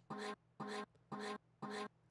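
A short, pitched vocal-chop sample is played back from a music production session. It repeats in a loop about twice a second, four identical brief hits, as it is auditioned and cleaned up with EQ.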